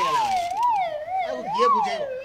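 Police siren sound, one wailing pitch rising and falling about twice a second.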